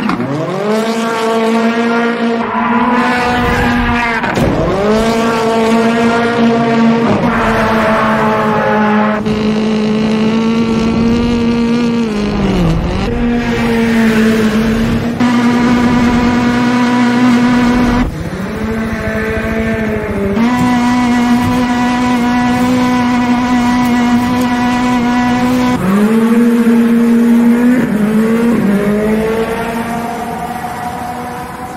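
A 650 hp Ford Fiesta's engine is held at high revs through a drift. It stays steady for several seconds at a time, drops sharply and climbs back about five times, with tyre squeal underneath.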